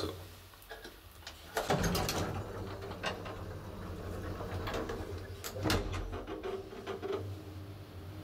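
1960 Schindler traction elevator: a steady low mechanical hum with rattles, a clunk about one and a half seconds in, and a few sharp clicks after it.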